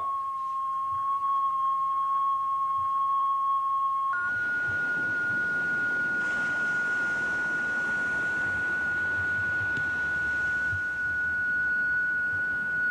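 Steady single-pitch tone from a vacuum-tube shortwave receiver picking up the Tesla coil transmitter's signal. About four seconds in it jumps to a slightly higher steady tone, now over a steady hiss.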